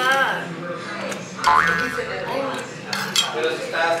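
Metal spoon scraping and clinking against an earthenware bowl as the last of a soup is scooped out, a few short clinks over a voice.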